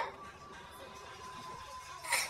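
Faint steady whine of an electric roller shutter's motor running, which fades out shortly before the end as the shutter stops by itself.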